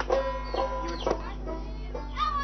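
Plucked-string music, three notes struck about half a second apart and left ringing, with clucking chickens over it.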